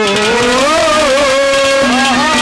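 Live Haryanvi ragni folk music: one long sliding melodic note held over a steady drone.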